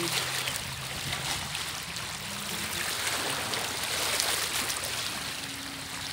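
Calm sea water lapping and trickling at the shoreline in a steady wash.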